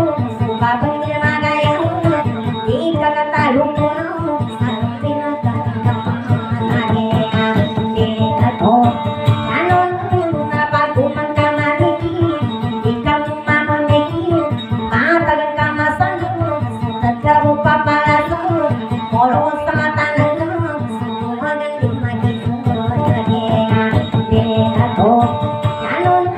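Acoustic guitar strummed rapidly and steadily while a singer chants a wavering, ornamented melody over it: live Maguindanaon dayunday music.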